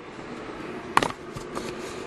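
Low background with a faint steady hum, and one short sharp click about a second in.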